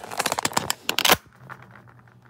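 Rapid cluster of clicks and rustles from the recording phone being handled as it is swung round, stopping abruptly a little after a second in.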